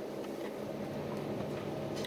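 A steady low background hum, such as a fan or room noise, with no speech.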